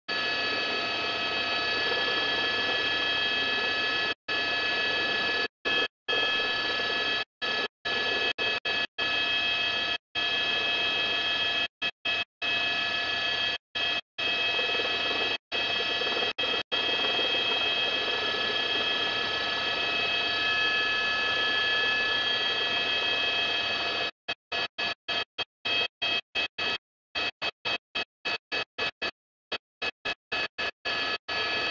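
News helicopter cabin noise carried over the crew's intercom feed: a steady hiss with several high whining tones from the turbine and gearbox. The feed keeps cutting out to silence for moments, more and more often near the end.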